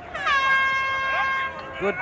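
A horn sounds one steady note for about a second and a half, settling slightly in pitch as it starts.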